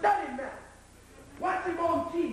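A man's voice speaking in two short phrases with a brief pause between them; only speech.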